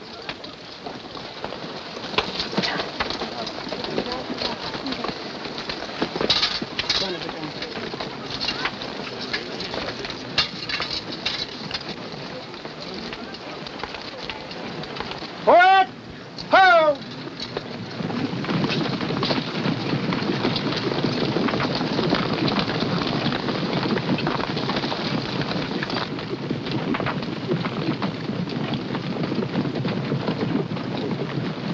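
Scattered knocks and tack noise of mounted men and horses, then two loud shouts about halfway through. After that a troop of cavalry horses sets off at a gallop, a steady crackling rumble of hooves on dry ground that runs to the end.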